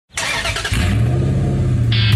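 A car engine starting and running, settling into a steady low drone from under a second in.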